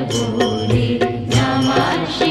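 Devotional music laid over the video: a voice singing a melody over drums keeping a steady beat of about three strokes a second.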